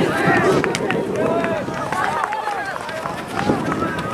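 Several voices shouting and calling out over one another, spectators and players during a youth soccer game, with a few short sharp knocks among them.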